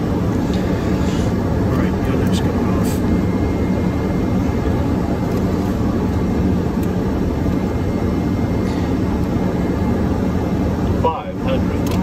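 Steady cabin noise in the cockpit of a Hawker 800XP business jet on approach: engine and airflow noise, deep and even, dipping briefly near the end.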